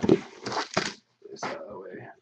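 Mostly a man's voice: a short spoken word, then more indistinct talk after a brief pause.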